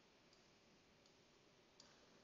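Near silence with three faint clicks of a stylus on a tablet as handwriting is written, the last a little louder near the end.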